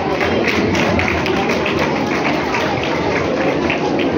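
A crowd clapping in unison, a steady rhythm of about four claps a second.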